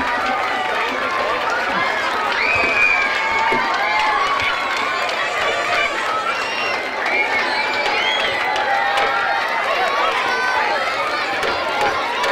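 A large crowd cheering and shouting, many voices overlapping in a steady din, with scattered whoops rising and falling in pitch.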